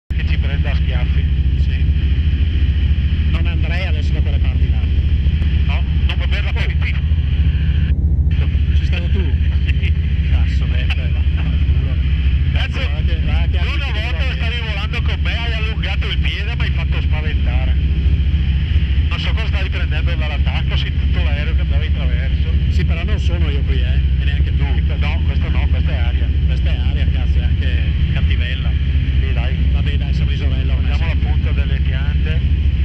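Engine and propeller of an Alisport Yuma ultralight in flight, heard from inside the open-framed cockpit as a loud, steady drone with no change in pitch.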